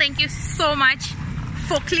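Mostly a woman talking in short phrases, over a steady low rumble of outdoor street noise.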